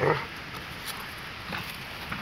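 A Doberman gives one short, excited vocal sound right at the start, then faint scuffling as it spins on bare dirt.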